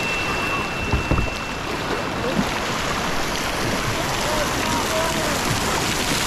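Steady rush of churning whitewater around a kayak, with a thin high tone during the first couple of seconds.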